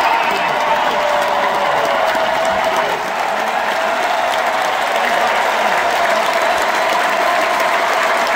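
Large arena crowd applauding and cheering, steady throughout.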